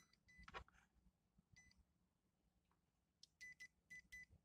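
A digital multimeter's continuity buzzer giving short, high beeps each time the test probes make contact, here while the fuses of a UPS inverter are being checked for a blown one. The beeps are brief and spaced out, with two in quick succession about three and a half seconds in, and faint probe clicks between them.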